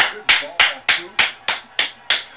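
One person clapping their hands in a fast, even rhythm, about three claps a second, seven claps in all, with a short room echo after each.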